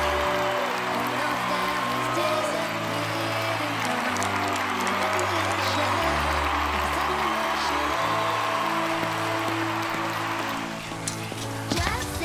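Background music with a slow bass line whose long held notes change every second or two, until it drops away about a second before the end.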